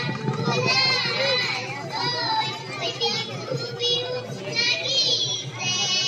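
A young girl's voice through a stage microphone and PA, speaking in a high, wavering voice over a background of other voices.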